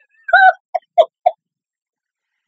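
A woman laughing in four short, high-pitched bursts, the first one longest, then three quick ones about a quarter-second apart.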